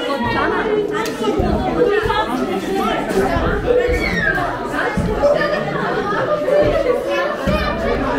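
Many voices, children's among them, chattering and talking over one another, with the echo of a large room.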